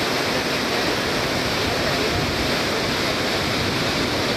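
Roar of the Devil's Throat at Iguazú Falls: a huge volume of water plunging into the gorge, a steady, loud rush of white noise with no let-up, with spray and wind buffeting the microphone.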